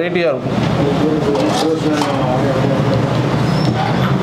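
A man talking, over a steady low background hum.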